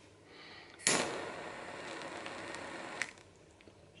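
Jet-flame lighter lit with a sharp click about a second in, then its jet flame hissing steadily for about two seconds before it cuts off with another click.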